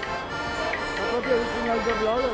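Accordion playing a traditional folk melody, its held notes stepping up and down.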